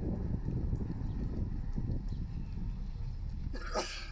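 Low, uneven rumble of a slowly moving car with wind at the window, easing off gradually. A brief, higher-pitched sound comes just before the end.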